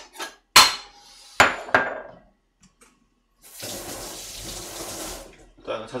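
Two sharp knocks about a second apart, then a kitchen sink tap running steadily for nearly two seconds as an onion is rinsed.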